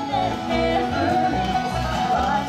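A bluegrass band playing live with fiddle, banjo, mandolin and guitar, in an instrumental passage with no singing. Held fiddle notes run over a steady pulsing bass beat.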